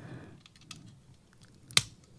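Faint handling rustle and small plastic clicks as fingers work a stiff release button on a small plastic toy starfighter, then one sharp plastic click near the end as the button gives and the astromech droid figure pops up.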